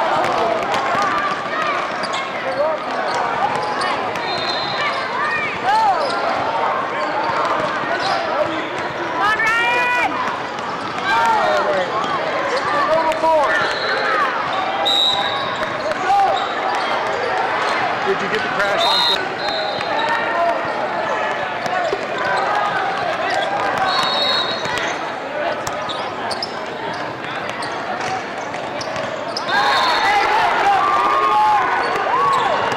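Indoor basketball game: a basketball being dribbled on the court amid shouting and calling voices of players and spectators, with a few brief high-pitched squeaks.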